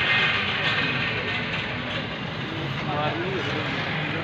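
Indistinct voices talking in the background over a steady noise, with a voice more audible near the end.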